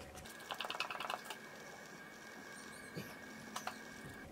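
A quick run of faint, rapid clicks about half a second in, followed by a few single clicks, over a faint steady whine.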